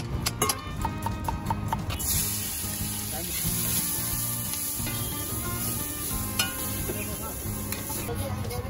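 A knife chopping green capsicum on a counter, a quick run of sharp chops; then from about two seconds in, marinated chicken pieces with onion and capsicum sizzling steadily on a hot flat iron tava as they are stirred with a spatula.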